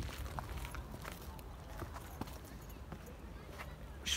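Footsteps of a person walking over grass and a dirt path: faint, irregular soft steps over a low steady rumble.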